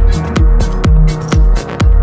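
Electronic house music played live on synthesizers and drum controllers: a steady kick drum about twice a second, with ticking hi-hats and a held synth tone.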